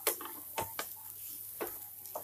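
Spatula stirring grated raw papaya in a non-stick pan, with about four light knocks of the spatula against the pan in two seconds.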